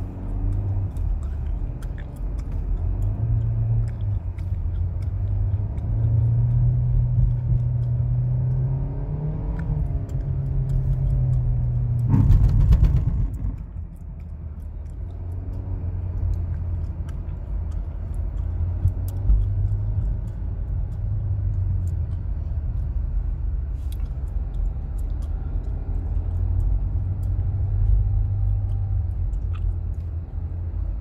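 Hyundai Tucson heard from inside the cabin while driving slowly on snow: a steady low engine and road drone that climbs in pitch as it speeds up, with a loud rushing burst about twelve seconds in, after which it drops back to a steady lower hum.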